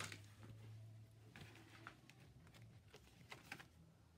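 Near silence, with a few faint taps and rustles of hands handling paper and a ring-bound journal.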